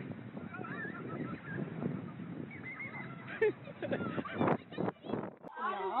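Indistinct, distant voices of children and adults outdoors, over a steady background noise, with a brief louder call about four and a half seconds in.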